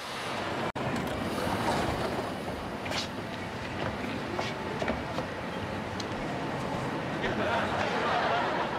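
Subway train running, heard from inside the car: a steady rumble and rattle with a few sharp clicks, briefly cutting out just under a second in.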